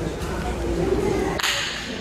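Indistinct voices in a gymnasium during a volleyball timeout, with a sudden sharp crack about one and a half seconds in that dies away within half a second.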